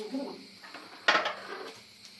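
A single sharp metallic clank about a second in, a hand tool striking metal, with a brief ring that fades within half a second. A man's voice is heard briefly at the start.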